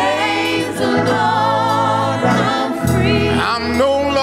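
Live gospel praise singing: a male lead singer and backing vocalists hold long, wavering notes over steady low accompaniment notes.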